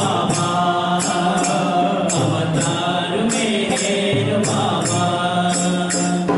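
Group devotional singing with voices holding long sung notes, accompanied by hand percussion jingling in a steady rhythm, about one or two strikes a second.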